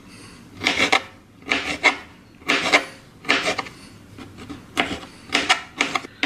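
A knife cutting pickled jalapeño slices into small pieces on a plastic cutting board: a series of about seven short cutting strokes, a little under one a second.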